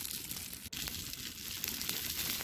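Chicken sizzling on aluminium foil over a charcoal fire: a steady hiss with small crackles, and a single sharp click about a third of the way through.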